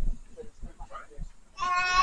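Low bumps from a phone being handled, then about a second and a half in a child's voice holds one high, steady note.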